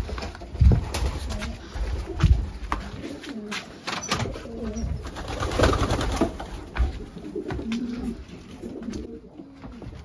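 Racing pigeons cooing in their loft, a run of low, bending coos through the clip. Two heavy thumps come in the first few seconds, with scattered light clicks and knocks.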